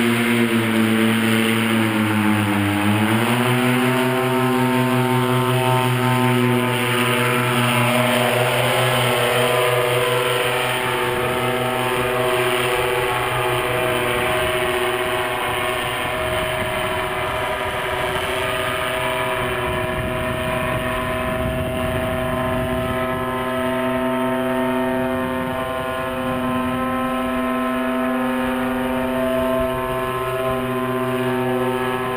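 Paramotor engine running at high power, rising in pitch about three seconds in and then holding steady.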